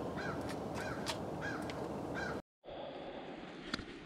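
A bird calling repeatedly, short calls about twice a second, over a steady outdoor hiss. The sound cuts off abruptly a little past halfway, leaving a quieter hush with a couple of faint clicks.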